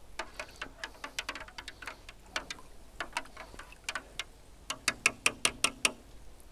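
Plastic stirring rod tapping against the bottom of a plastic darkroom tray as freshly mixed thiourea sepia toner is stirred: a run of small clicks, coming faster and louder near the end.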